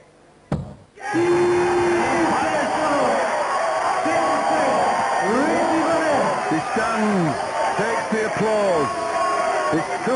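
A dart lands in the board with one sharp thud. About a second later a darts crowd bursts into loud cheering and shouting at a set-winning double, many voices whooping and yelling together.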